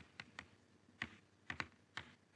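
Chalk writing on a blackboard: a series of short, faint taps and scrapes, about six in two seconds, as the chalk strikes and lifts off the board with each letter.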